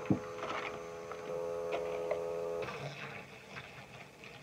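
Small electric motor of a toy mini washing machine humming with a steady whine, with a sharp knock just at the start; the hum cuts out about two-thirds of the way through. The tub has too little water for the makeup sponge to float, and the owners blame this for the spinner stalling.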